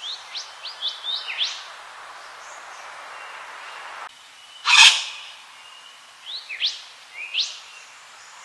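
Wattlebird calling: a quick run of short, sharply rising notes, then one loud, harsh call about five seconds in, then a few more short rising notes near the end.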